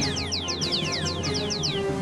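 Cartoon-style 'dizzy, seeing stars' sound effect: rapid high whistled chirps, each falling in pitch, about seven a second, stopping shortly before the end, over background music.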